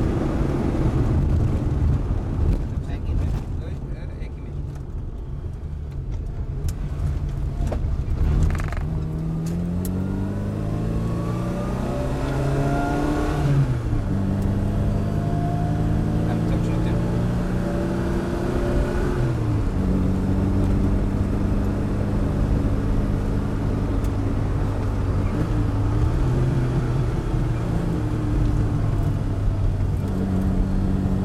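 Opel 1204 (Kadett C) four-cylinder engine heard from inside the cabin. After a quieter spell of easing off in the first seconds, it accelerates hard, rising in pitch through the gears with upshifts about 14 and 20 seconds in, then runs on at speed.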